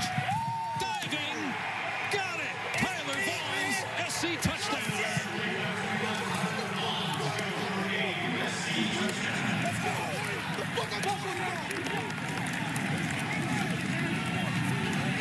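Several excited voices shouting and cheering over one another as players celebrate a touchdown, heard in the football broadcast audio, with a couple of sharp claps or thumps a few seconds in.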